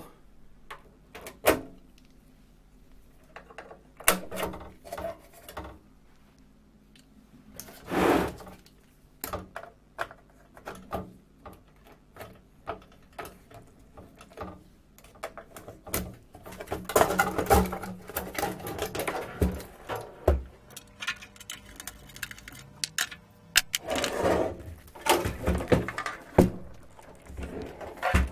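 Hand disassembly of a sheet-metal equipment chassis: a screwdriver turning quarter-turn panel fasteners, then a metal panel and internal parts being lifted out, giving scattered clicks, knocks and metallic clatter that get busier in the second half.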